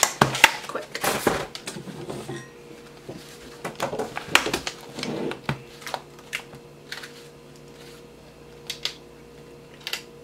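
Clatter of a plastic egg carton being handled and set down on a wooden table, then scattered light clicks and taps as an egg is cracked and its yolk passed between the shell halves, over a faint steady hum.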